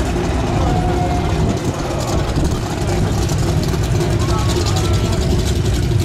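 Vintage muscle car's engine idling loudly and steadily at the drag strip start line, staged and waiting for the launch.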